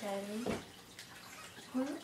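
A voice at the start and again near the end, with a single sharp click between them about half a second in.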